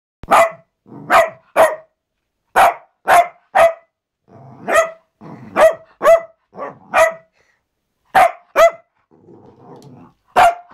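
Cavalier King Charles Spaniel barking in short, sharp, high-pitched barks, about thirteen in quick clusters of two or three. The barking is playful: the dog is play-bowing and bouncing.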